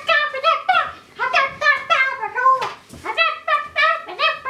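A young girl singing a quick run of short, high-pitched syllables with no clear words, her pitch stepping up and down, with a short break about a second in and another near three seconds.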